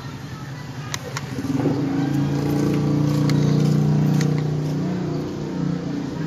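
A motor vehicle engine running with a steady hum, building from about a second in and easing off near the end, with a few sharp plastic clicks from the buttons of a tabletop boxing toy being pressed.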